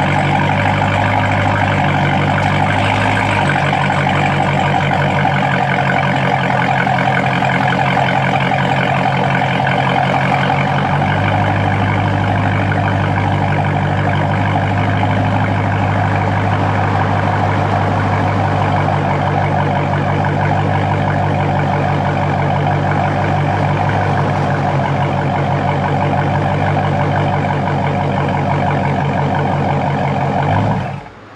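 Dodge Charger Scat Pack's 392 (6.4-litre) HEMI V8 idling steadily, heard from behind the car at the exhaust. Its note shifts a little about three seconds and again about eleven seconds in.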